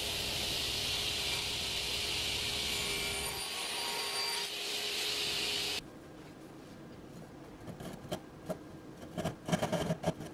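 Sliding-table saw running and cutting through a Sapele stile, a steady noise that cuts off suddenly about six seconds in; it is making stop cuts to rip off the moulding integral to the stile. After a short lull a hand back saw saws across the moulding in short strokes, a few a second, growing louder near the end.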